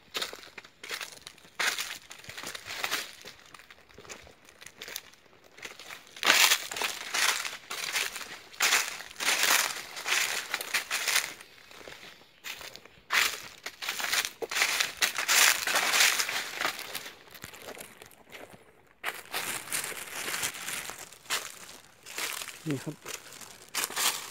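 Footsteps crunching and crackling through thick, dry fallen leaves in an irregular walking rhythm, with a brief pause a few seconds before the end.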